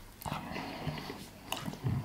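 A man chewing a mouthful of lasagna noisily, with wet, smacking mouth sounds, like an animal eating.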